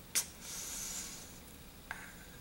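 Faint mouth sounds as an unripe green almond is brought up to be bitten: a short lip click, a brief breath in, and another small click as the fuzzy fruit meets the lips.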